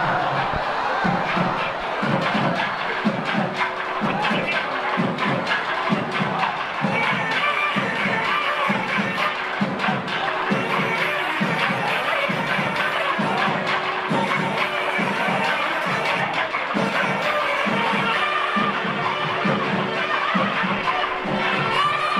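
Temple drumming at about two beats a second over a held steady drone, with a large crowd of devotees murmuring and calling out.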